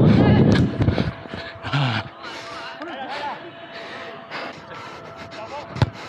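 Players' voices calling out on a football pitch, with wind and movement rumble on a body-worn camera's microphone during the first second. A single sharp thump comes near the end.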